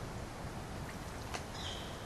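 Quiet outdoor background noise: a steady low hiss, with one faint click about a second and a half in.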